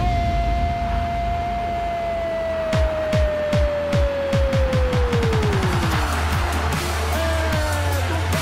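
Electronic music with a run of falling-pitch drum hits that speed up in the middle, under a commentator's single long drawn-out goal cry held for about six seconds before its pitch sags away.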